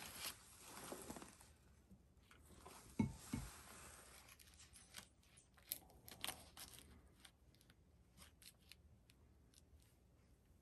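Quiet handling sounds: stiff glitter ribbon rustling and crinkling as hands press it into place on a wooden plaque, with a soft knock on the table about three seconds in and a few light clicks later.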